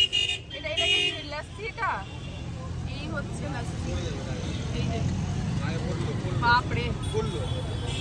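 Street traffic: a vehicle horn sounds briefly about a second in, over a steady low rumble of engines, with scattered voices.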